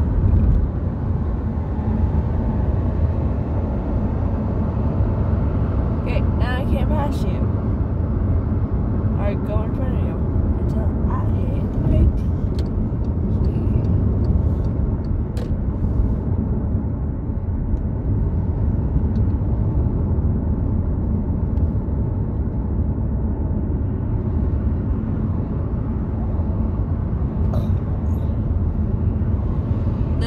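Steady low road and engine rumble heard from inside a moving car's cabin, with a brief bump about twelve seconds in.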